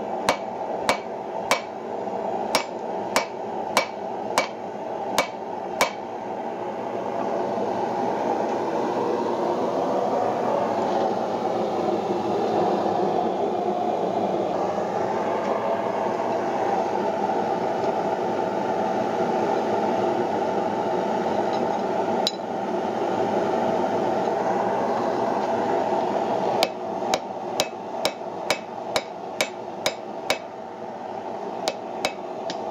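Hand hammer striking red-hot wrought iron on an anvil: about nine ringing blows at a steady pace, then a pause of some twenty seconds filled with the steady rushing noise of the forge running, then a faster run of about eight blows near the end. The forge's rushing noise runs under the hammering as well.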